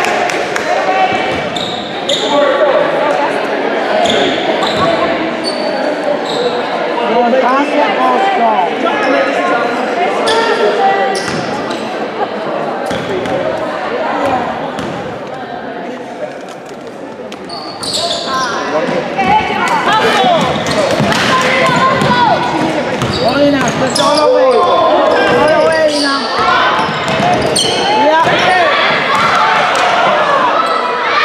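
Basketball game in a gym: a basketball bouncing on a hardwood court amid overlapping voices of players and spectators calling out, echoing in the large hall. It goes quieter for a few seconds in the middle, while players set up for a free throw, then the noise picks up again.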